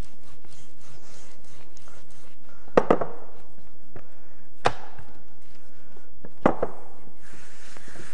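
Wooden rolling pin rolling out whole-wheat pizza dough on a worktop: a faint rubbing with five sharp wooden knocks of the pin on the counter, a pair, then a single one, then another pair. A brief rubbing hiss comes near the end.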